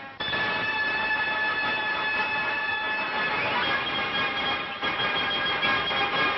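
Worn old film soundtrack: a dense, steady noise with several high tones held in it. It starts abruptly just after the brass music breaks off and gets a little brighter about halfway through.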